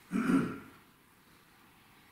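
A man clears his throat once, briefly, just after the start, followed by faint room tone.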